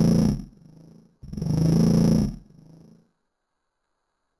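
Heavily slowed-down cartoon voice of the wolf character: two long, deep, drawn-out vocal sounds a little over a second apart, each fading into a short tail, then silence for the last second.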